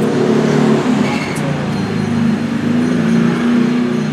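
A steady low mechanical hum of several even tones, like a motor or engine running continuously.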